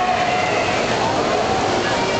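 Steady wash of noise in a large indoor pool hall during a swim race: water splashing from the swimmers mixed with crowd voices and faint shouted cheers.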